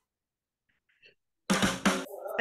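Near silence for about a second and a half, then a sudden loud burst of noise with a few sharp knocks in it, lasting about half a second.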